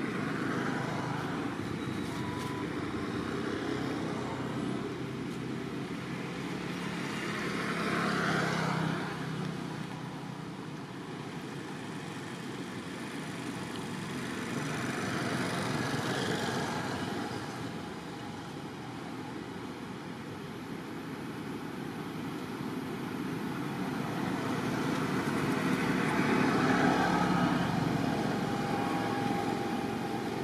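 Road traffic: motor vehicles going by one after another, three of them swelling up and fading away over a few seconds each, over a steady traffic hum.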